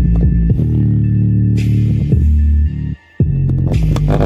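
Bass-heavy music played loud through a JBL Boombox 2 portable Bluetooth speaker: deep held bass notes that step in pitch, with the sound cutting out briefly about three seconds in.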